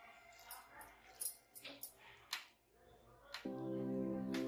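Background music stops, leaving a quiet stretch with a few faint, scattered clicks and rustles from hands pressing boondi into a ladu ball; the music comes back in near the end.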